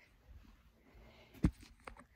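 Handling noise from a phone being moved and adjusted in the hand: faint rustling, a knock about one and a half seconds in, and a sharper click just before the end.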